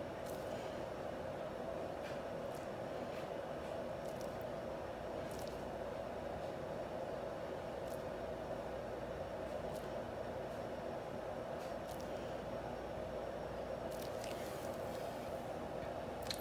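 Steady background hum, even and unchanging, with a few faint ticks scattered through it.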